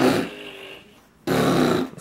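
Two short, rough vocal sounds: a brief one right at the start and a longer one about a second and a quarter in.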